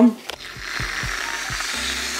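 Aerosol can of fat-free Reddi-wip whipped cream being sprayed onto a drink: a steady hiss that lasts about two seconds.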